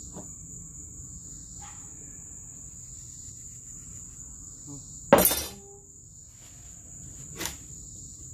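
Insects, crickets, chirring steadily and high-pitched throughout. One loud sharp crack about five seconds in, of a kind typical of wood breaking or being struck, and a smaller knock near the end.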